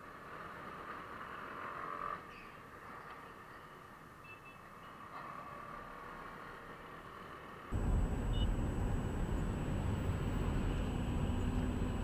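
Fairly quiet city traffic noise heard from a riding scooter. About eight seconds in, it cuts to the louder, steady low road rumble of a car driving on a highway, heard from inside the car through a dashboard camera, with a faint steady high whine.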